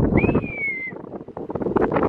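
Wind buffeting the microphone at an open truck window, a rough, crackling rush. A thin high whistle slides slightly down in pitch for under a second, shortly after the start.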